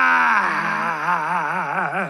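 A person's voice holding one long sung note that drops in pitch about half a second in, then wavers in a wide, fast vibrato and cuts off at the end.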